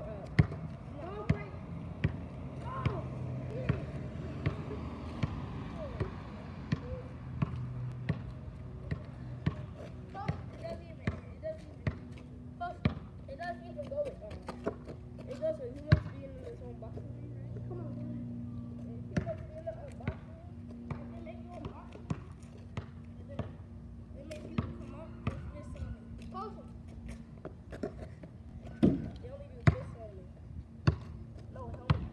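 Basketball bouncing on an asphalt street in irregular thuds, with a few louder bangs about halfway and near the end.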